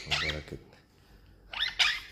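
Young lutino monk parakeet calling: a short call that trails off at the start, then two quick, high squawks near the end.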